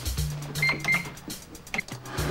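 Background music, over a shop cash register being rung up: two short high electronic beeps just over half a second in, then a click near the end.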